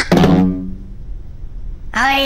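A cartoon sound effect: a sudden hit right at the start, with a short pitched tone that dies away within about half a second. After that it is quieter.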